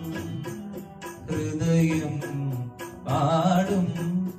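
A young man singing a solo song into a handheld microphone, holding and bending long notes, over musical accompaniment with a steady beat of about four ticks a second.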